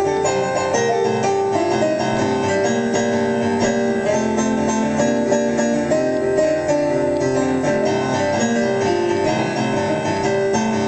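A Korg X2 keyboard workstation played in a solo improvisation: a continuous flow of held chords and melody notes, the notes changing every second or so.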